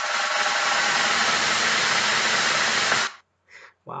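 Snare drum roll, held steady, then cutting off abruptly about three seconds in.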